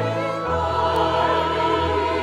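Church choir singing a slow choral anthem, held sung notes over a sustained low accompaniment whose bass note moves lower about half a second in.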